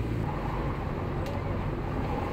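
Car driving slowly, heard from inside the cabin: a steady low rumble of engine and tyre noise.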